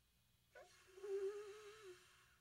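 A single held tone that slides down in pitch as it starts, then holds with a slight waver for about a second and a half before fading.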